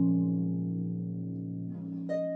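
Concert pedal harp: a plucked chord rings on and slowly dies away, with a soft new note coming in near the end.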